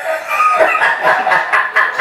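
Loud human laughter.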